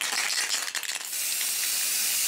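Aerosol spray-paint can hissing as black undercoat primer is sprayed onto plastic miniatures. The spray starts abruptly, breaks up briefly a few times in the first second, then runs as a steady hiss.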